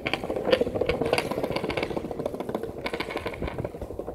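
Skateboard wheels rolling over brick pavers: a steady rumble with a dense clatter of clicks as the wheels cross the joints between the bricks.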